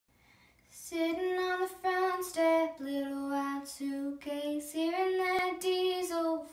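A young girl singing solo a cappella, with no accompaniment. She begins about a second in, moving between held notes.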